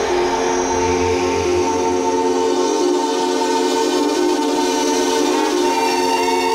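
Modular synthesizer drone: a dense cluster of steady held tones, like a sustained organ-like chord. A deep low tone swells briefly about a second in, and a hissing noise layer rises and fades in the middle.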